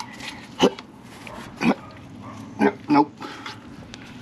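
A man grunting with effort four times as he pushes against a dented steel trailer fender to try to force the dent out.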